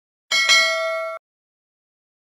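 Notification-bell 'ding' sound effect from a subscribe animation: a bright bell tone struck twice in quick succession, ringing for under a second before cutting off suddenly.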